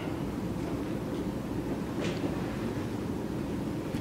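Steady low room noise of a lecture hall with no speech, a low even rumble. There is one faint brief sound about two seconds in.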